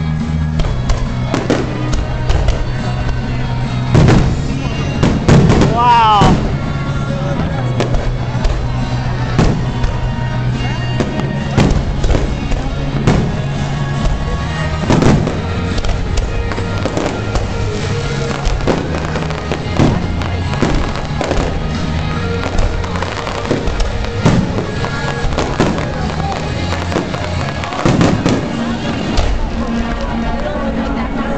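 Zambelli aerial fireworks shells bursting in quick, irregular succession, loudest about four to six seconds in, with a rising whistle about six seconds in. Music plays steadily underneath.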